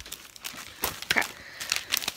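Plastic packaging of self-adhesive laminating sheets crinkling as it is handled, in a few scattered crackles, mostly in the second half.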